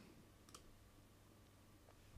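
Near silence: room tone, with a faint computer-mouse click about half a second in as a menu item is selected.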